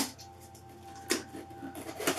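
Cardboard box being worked open by hand. There is a sharp scrape or rip of the cardboard and tape at the start and a second, softer scrape about a second in.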